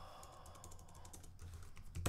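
Typing on a computer keyboard: a quick run of faint, light key clicks as a word is typed into a code editor.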